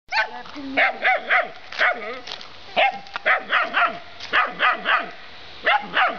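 A young German Shepherd puppy barking: a long run of short, high-pitched barks, about two or three a second, with brief pauses between bursts.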